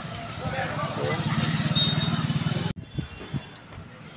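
A motorcycle engine running as the bike rides off, with voices behind it. About three-quarters of the way in, the sound cuts off abruptly to something much quieter.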